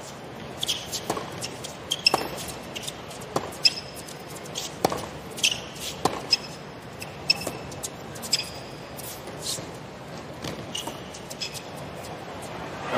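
Tennis rally on a hard court: sharp racket-on-ball strikes about every second and a half, with short high squeaks of players' shoes on the court between the shots.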